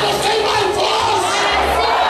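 A congregation shouting and singing together, many voices at once, over music with a low bass line that steps from note to note.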